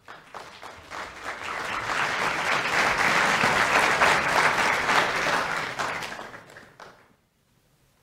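Audience applause in a hall, swelling over the first two seconds and dying away about seven seconds in.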